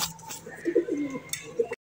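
Domestic pigeons cooing, low and wavering, with a short click about a second and a half in; the sound cuts off suddenly near the end.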